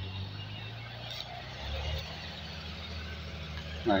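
Diesel engine running steadily with a low hum, its pitch shifting slightly a little under two seconds in.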